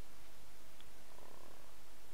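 Room tone: a steady hiss with a low hum underneath, the recording microphone's background noise, with nothing else distinct.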